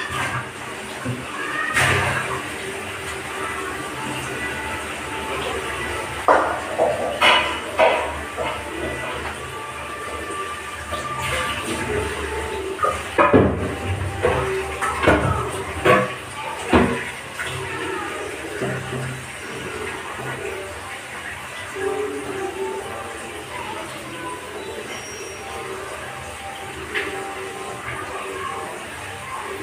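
Clatter of steel pots and utensils at a kitchen sink, a few sharp knocks around six to eight seconds in and again around thirteen to seventeen seconds in, over running tap water and steady background music.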